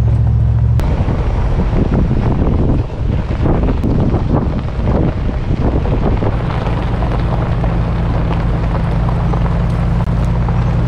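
Truck engine running with a steady low drone while driving. From about a second in until about six seconds in, a rough, noisy rumble and rattle covers it, then the steady drone returns.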